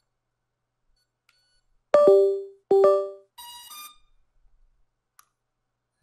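Electronic start-up beeps from the Splash Drone 4 as it powers on: two short beeps about two seconds in, each dropping in pitch, then a brighter, higher chime.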